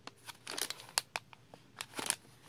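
Plastic candy packet crinkling as it is handled, in a run of short, irregular crackles.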